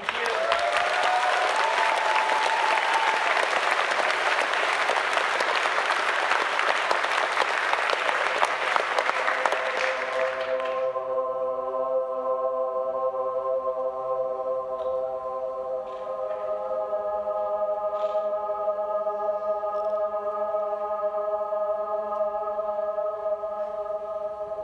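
Concert audience applauding, with a whistle about two seconds in; the applause stops suddenly about eleven seconds in, and a slow, steady held chord of several sustained tones begins, opening the band's next piece.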